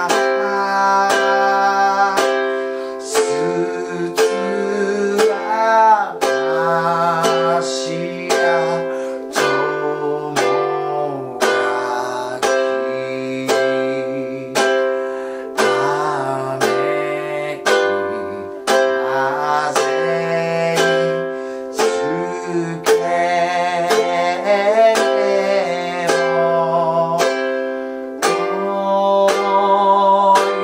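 Ukulele strummed once per beat in a slow three-beat time through simple chords (C, G7, F, Am), with a man singing the melody along with it.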